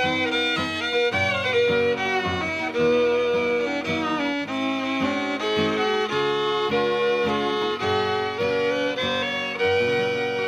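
Old-time fiddle tune played on fiddle with acoustic guitar accompaniment, a quick run of bowed melody notes over a steady strummed bass-and-chord backing.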